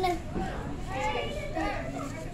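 Young children's voices, talking and calling out as they play.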